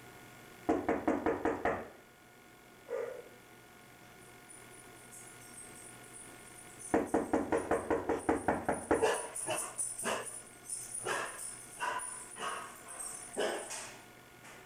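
Knocking on a panelled door. There is a quick run of about seven knocks, then a single knock. A longer, louder run of rapid knocks follows and turns into irregular knocking toward the end.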